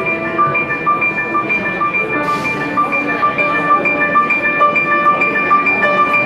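Grand piano played solo: a high note struck again and again in an even rhythm, about two to three times a second, over moving lower notes.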